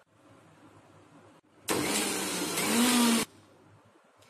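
Electric mixer grinder (mixie) motor run in one short pulse of about a second and a half, blending egg yolk, oil, lemon juice and mustard into mayonnaise. It starts and stops abruptly, its hum rising slightly in pitch just before it cuts off.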